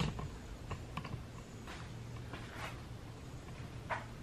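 Scattered light clicks and taps, several over a few seconds, over a low steady hum.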